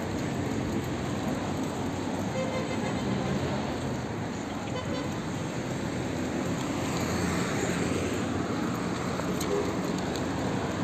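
Steady street ambience dominated by car traffic on the road alongside.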